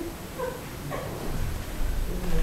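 Brief whimpering voice sounds in short broken fragments, then a few low thuds near the end.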